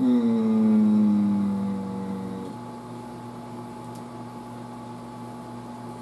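A man's long, held hesitation hum, falling slightly in pitch for about two and a half seconds and then breaking off, followed by a steady low hum of room equipment.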